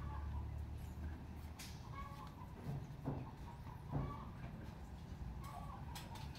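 Domestic chickens clucking softly, a few short calls spread through.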